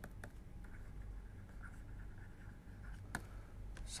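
Stylus writing on a tablet screen: faint, light scratching with a few soft taps, the sharpest about three seconds in.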